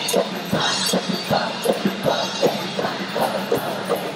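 Pep band playing a tune with a steady drum and cymbal beat, about three hits a second.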